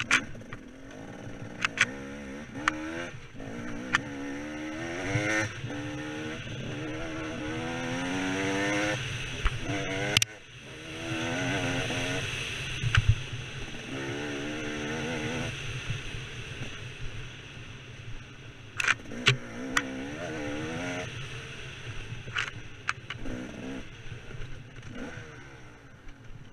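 KTM 300 two-stroke dirt bike engine under hard riding, the revs rising and falling again and again through the gears. It makes one longer climb in pitch that cuts back suddenly about ten seconds in. Sharp knocks and clatter are scattered throughout.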